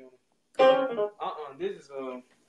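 Keyboard playing a piano sound: faint notes at first, then a loud chord struck about half a second in, followed by a few more notes, with a voice mixed in.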